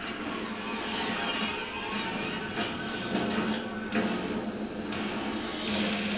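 Tense film-score ambience: a low steady drone under a dense, noisy texture, with a high falling screech about five seconds in.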